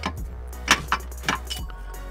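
Water pump being twisted and tugged in its engine housing: three sharp metallic clicks, the loudest about two-thirds of a second in, over quiet background music.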